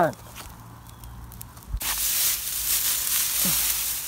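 Fire in a pile of dry grass and business cards, burning with a sizzling hiss that swells after a low thump about two seconds in and then holds steady.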